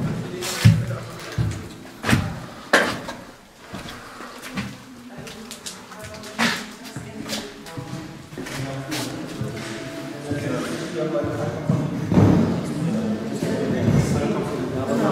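Several sharp, loud knocks or thuds in the first half, echoing in a large empty room. From about ten seconds in, faint music or voices build beneath them.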